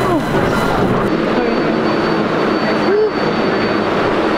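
Loud, steady din of a New York City subway station and 7-line train, a dense rushing rumble with a faint steady high whine joining about a second in.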